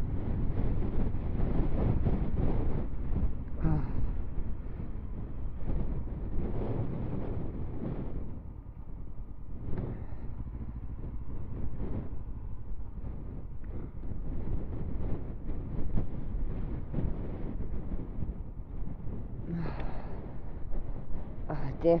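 Strong wind buffeting the microphone in gusts, loudest in the first eight seconds or so, with a motorcycle engine running at low speed underneath.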